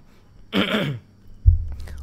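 A man gives one short cough, clearing his throat, about half a second in; about a second later comes a low thump.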